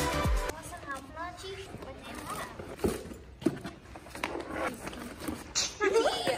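Electronic background music with a bass beat that cuts off about half a second in, followed by faint voices and a few light knocks and scuffs.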